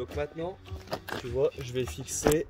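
A man's voice speaking in short, broken phrases that the recogniser did not write down, with a few light clicks and knocks among them.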